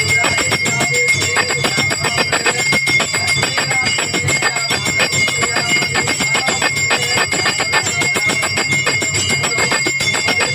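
Temple bells rung rapidly and without a break during an aarti: a dense, steady clanging over a constant high ringing tone.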